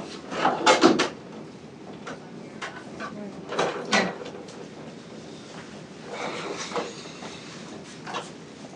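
Irregular knocks and clatter of equipment being handled at a hospital cart, loudest about half a second in and again around four seconds in.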